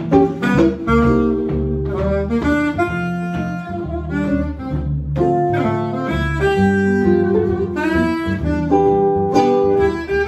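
Small swing jazz combo playing: saxophone carrying the melody over guitar rhythm and upright bass.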